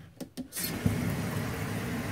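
A few short clicks, then a utility-sink faucet turned on about half a second in, running cold water in a steady stream into the sink.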